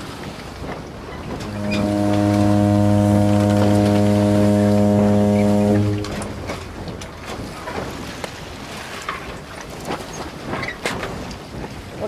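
A ship's horn gives one long steady blast, starting about a second and a half in and lasting about four and a half seconds, over steady background noise.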